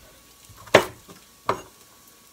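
Two crisp chops of a chef's knife cutting through baby carrots onto a wooden cutting board, about three-quarters of a second apart.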